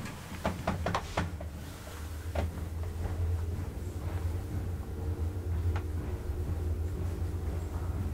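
Counterweightless ASEA traction elevator setting off: a quick series of clicks, then the steady low hum of the hoist machinery as the cab travels between floors, with an occasional single click.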